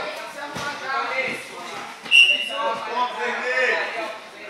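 Overlapping shouts and talk of spectators and coaches in a large hall. About two seconds in comes one short, shrill referee's whistle blast, the loudest sound, which stops the action as the wrestlers go out of bounds.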